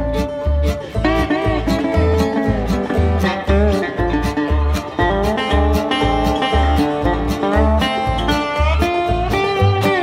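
Instrumental break in a bluegrass-folk song: an acoustic string band playing plucked guitar and banjo over a steady low beat about two times a second, with no singing.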